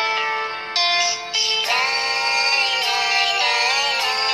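A pop song playing through a Samsung Galaxy M04 phone's loudspeaker at full volume: held instrumental notes, then a singing voice coming in about one and a half seconds in.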